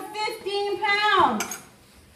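A high voice singing a wordless tune in held notes, ending about a second in with a long falling slide in pitch.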